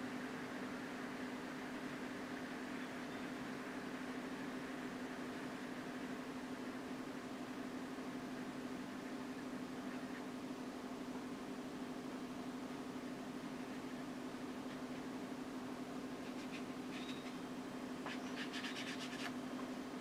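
A steady low hum with faint hiss of room tone, and faint scratchy strokes of a watercolour brush on paper near the end.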